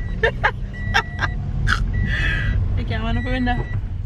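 Steady low rumble of a car's road and engine noise heard inside the cabin, under broken chatter and laughter from the passengers. A faint high tone comes and goes several times.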